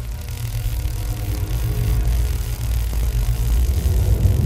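Sound-design rumble for an animated logo reveal: a deep low rumble with a hiss over it starts suddenly, then swells steadily in loudness.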